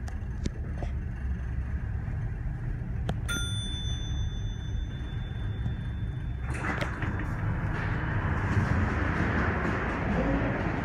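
Heights hydraulic elevator car running with a steady low rumble. About three seconds in, the car's bell rings once, a single bright ding that rings out for about a second. A little after halfway a louder, wider hiss of noise sets in.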